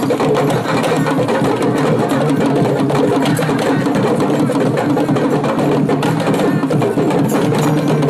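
A live percussion ensemble of drums playing a fast, dense, unbroken rhythm, with many strokes a second at a steady level.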